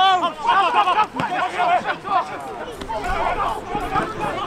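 Several men's voices calling out over one another, with crowd chatter behind.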